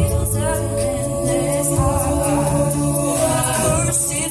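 Women's a cappella group singing close harmony through microphones, with a sung bass line and a low beat about once a second.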